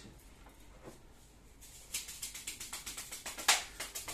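Pair of grain-filled bamboo massage sticks beating on a person's thigh in a fast drumming run, about six strikes a second, starting about halfway through, with one harder strike near the end.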